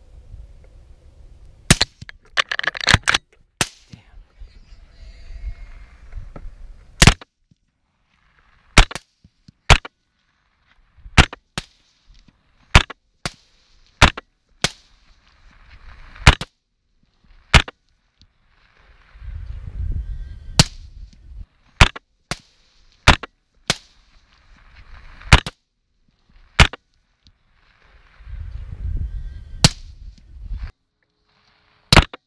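Rifle shots fired in rapid strings: about two dozen sharp cracks, several coming a fraction of a second apart, as from a semi-automatic rifle. Twice, a low rumbling noise rises between the shots.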